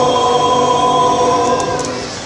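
Men's barbershop chorus singing a sustained a cappella chord in close four-part harmony, the chord fading away near the end.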